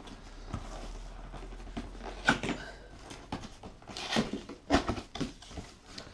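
Cardboard box being opened by hand: flaps pulled apart and folded back, with cardboard scraping, rustling and knocking. A sharp crack comes about two seconds in, and a cluster of knocks comes near the end.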